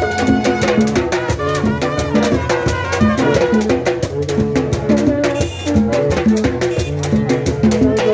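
Haitian rara band playing live: brass horns repeat a short riff over a steady beat of drums and percussion.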